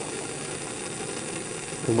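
Bunsen burner flame burning with a steady, even noise.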